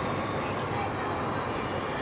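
Steady road and tyre noise inside a car's cabin at highway speed.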